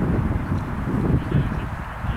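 Steady low rumble of wind on the microphone.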